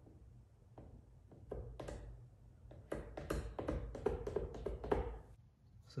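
Plastic squeegee working wet paint protection film on a car mirror cap: a string of short taps and rubs. They come sparsely at first, then quicker and louder from about three seconds in, and stop shortly after five seconds.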